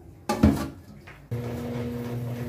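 An aluminium pot clatters as it is set down in the sink, a third of a second in. About a second later a steady machine hum starts: a tanquinho, a small top-loading washing machine, switched on and running.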